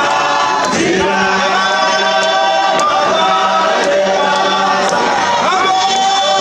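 A congregation singing a hymn together in chorus, a man's voice leading through a microphone and PA, with hand claps every second or so.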